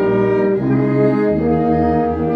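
Small mixed ensemble of two violins, clarinet, trombone, euphonium and tuba playing held chords. The harmony moves to a new chord about one and a half seconds in as a low bass note comes in underneath.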